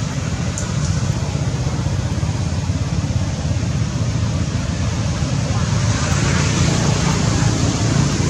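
Steady outdoor background noise with a low rumble, even throughout and with no distinct event standing out.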